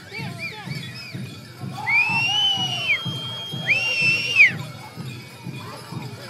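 Several long, high-pitched held cries at an Apache Gaan (Crown Dance), overlapping from about two to four and a half seconds in. Under them runs the dance's steady drumbeat and singing.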